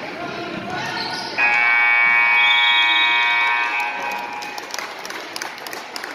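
Gym scoreboard horn sounding one loud, steady blast of about three seconds, starting abruptly, over crowd voices and basketball bounces in the gym.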